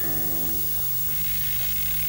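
Electric guitar struck once, its chord ringing and fading away within about a second, over a steady amplifier hum and hiss.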